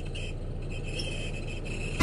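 Car engine idling, heard from inside the cabin, with faint intermittent high-pitched squeaks recurring over the steady hum. The driver takes the squeak for a mouse in the car, or else a fault in the car itself.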